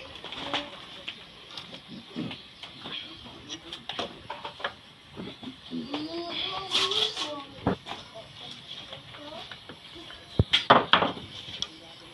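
Light taps and clicks of a steel try square and pencil against a wooden plank as it is marked out, with a cluster of sharper knocks near the end.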